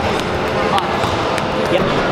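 Footballs being kicked and bouncing on a sports-hall floor, many short sharp thuds from several balls at once over a steady background of voices in a large hall.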